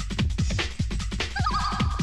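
Breakbeat DJ mix playing loud: a busy broken drum pattern over deep kick drums and bass. About one and a half seconds in, a high warbling tone enters over the beat.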